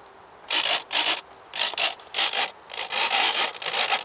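Handling noise: irregular scuffing and rubbing as the hand-held foam-board jet and camera are moved about. It comes as a few short bursts, then a longer run near the end.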